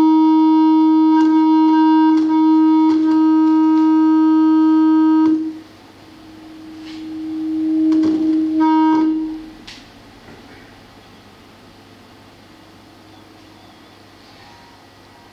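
Acoustic feedback tone from microphones set into glass jars: one steady held pitch with overtones. It cuts off suddenly about five seconds in, swells back up around eight seconds, and dies away by ten, leaving a low hum of the room. The tone comes from standing waves and interference set up in the room.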